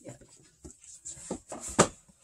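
Vinyl records in their sleeves and the cardboard box being handled as records are pulled out: scattered rustles and light taps, with one sharp knock near the end.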